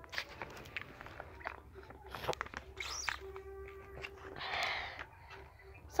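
Faint handling noise from a phone held close and moved about: soft rustles and scattered small clicks.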